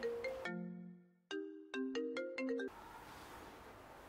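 Mobile phone ringtone: a short melody of marimba-like notes that breaks off briefly and then stops suddenly about two and a half seconds in, as the call is answered.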